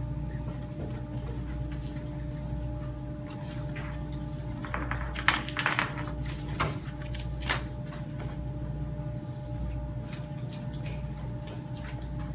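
Steady hum of room tone with scattered knocks, shuffles and paper rustles as people get up from chairs, walk off and test papers are gathered from a table, busiest in the middle.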